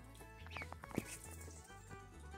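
Faint peeping and a soft tap from a brood of Pekin ducklings, heard between about half a second and a second in, over faint background music.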